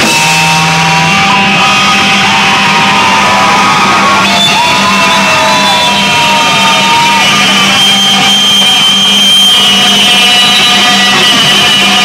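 Live rock band playing loudly: long, held electric guitar notes ring over a steady low drone, without a drumbeat.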